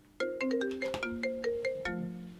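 Mobile phone ringing with a marimba-style ringtone: a quick melody of struck notes starting about a fifth of a second in.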